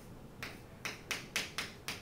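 Chalk on a chalkboard during writing: a run of about six short, sharp taps and strokes as the chalk strikes the board.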